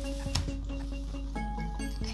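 Soft background music of steady held notes, with a single light click about a third of a second in.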